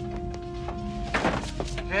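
Film soundtrack with sustained musical notes held underneath and one thunk about a second in, from a stuck lever being worked.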